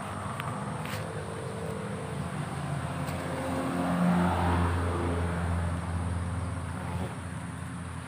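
A motor vehicle's engine running, a low steady hum that swells to its loudest about halfway through and then fades.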